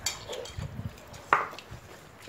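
Light clinks and taps of chopsticks and bowls being handled during a meal, with one sharper click a little past halfway.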